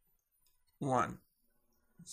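A few faint computer keyboard keystrokes as a line of code is finished and Enter is pressed, with a man's voice saying one short word about a second in.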